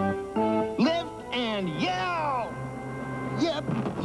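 Cartoon soundtrack: a few held music notes, then a string of swooping voice-like sound effects that slide up and down in pitch, over light background music.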